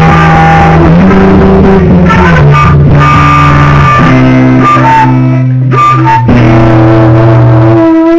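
Acoustic guitar and flute playing slow ambient music: long held low notes that shift pitch every second or two, with short higher flute notes over them.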